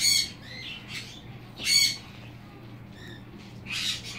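Pet parrot giving three short, high squawks, one at the start, one about a second and a half later and one near the end. A low steady hum runs underneath.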